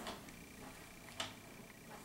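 Quiet handling of wig-styling tools: a single light click about a second in, with a few tiny ticks, over a faint high steady whine.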